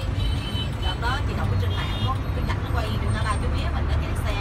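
City bus running through traffic, a steady low engine and road rumble heard from inside the bus, with a voice or singing over it.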